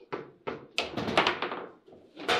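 Table football play: a couple of single knocks, then about a second in a quick run of sharp clacks and thunks as the ball and the players' rods strike the plastic figures and the table, stopping shortly before the end.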